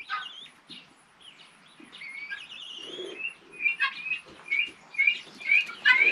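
Birds chirping: a high, wavering run of notes about two seconds in, then short high chirps repeated about twice a second.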